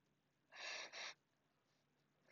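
A woman's breathing: two short, quick breaths in close succession about half a second in, as she presses up into a tripod headstand. Otherwise near silence.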